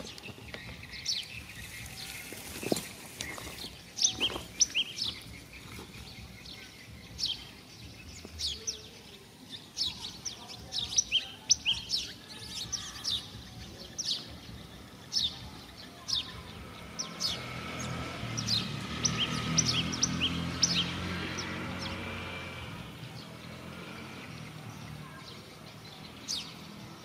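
Small birds chirping over and over in short, falling notes. A low hum swells in the middle and fades again.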